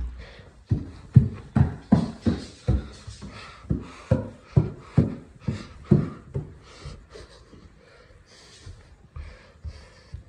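Quick footsteps climbing wooden stairs, a steady run of about a dozen thumps at roughly two and a half a second, stopping after about six seconds.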